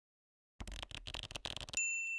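Title-sequence sound effect: about a second of rapid, stuttering crackle, then a single bright bell-like ding that rings on and fades.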